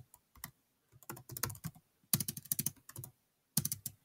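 Typing on a computer keyboard: quick key clicks in short runs of several strokes, with brief pauses between the runs.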